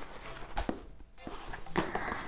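Faint handling sounds of a book and its packaging: soft rustling with a couple of light taps, one near the start and one near the end.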